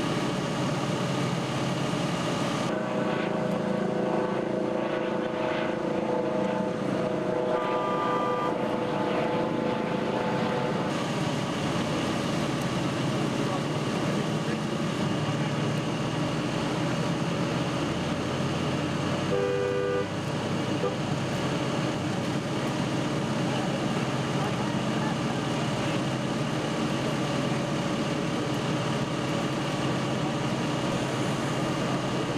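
Steady engine noise of idling fire trucks and rescue equipment at a vehicle extrication, with indistinct voices of the crew. A higher steady machine tone joins about three seconds in and drops out about eleven seconds in, and a brief two-note beep sounds about twenty seconds in.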